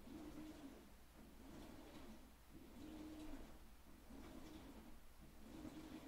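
Faint hum of a Titan TN-1541S industrial flatbed sewing machine running in short slow bursts, roughly one a second, as it top-stitches through layered vinyl.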